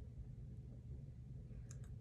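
Quiet room with a steady low hum, and two small, quick clicks close together near the end.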